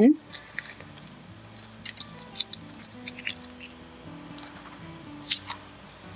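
Blue painter's tape being rolled into loops and pressed onto the back of watercolor paper: scattered soft crinkles, peeling and small taps.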